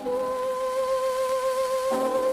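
Soprano voice holding one long sung note with vibrato on an acoustic 1904 Victor 78 rpm disc recording, with surface hiss underneath.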